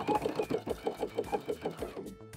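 Domestic electric sewing machine running a straight stitch, the needle going steadily at about nine stitches a second.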